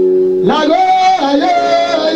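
A man singing loudly into a handheld microphone, his voice sliding between held notes, coming in about half a second in as a steady held chord cuts off.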